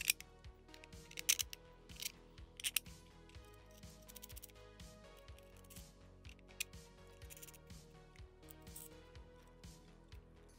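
Sharp plastic clicks and snaps from 3D-printed polycarbonate turbine parts being handled and fitted together: single clicks and pairs, with a quick run of them about four seconds in. Background music plays throughout.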